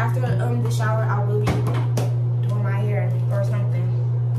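A woman talking over a loud, steady low hum.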